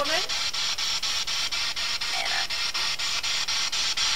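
Ghost-box (spirit box) app sweeping through radio static: a steady hiss ticking about six times a second. A brief voice fragment cuts in about two seconds in, heard by the investigators as "Nana".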